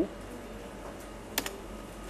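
Two quick computer-keyboard key clicks about a second and a half in, over a steady low room hum.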